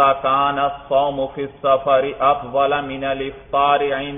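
A man's voice reciting Arabic text in a chant-like reading cadence, with short pauses between phrases.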